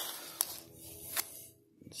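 Hands handling a plastic action figure that carries a small metal chain: light rustling with two sharp clicks about a second apart.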